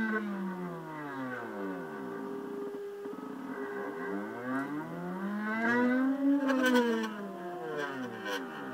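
Axis stepper motors of a homemade CNC pen plotter whining as the pen traces curved letter outlines, several tones sliding down and back up in pitch as the axes slow and speed through the curves, with a steady tone in the middle stretch. A few light clicks come about six to seven seconds in.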